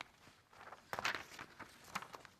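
A few soft knocks and rustles close to a podium microphone, busiest about a second in: handling noise between spoken items.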